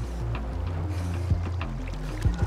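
Seawater splashing and sloshing around a swimming Newfoundland dog, under background music of sustained low notes.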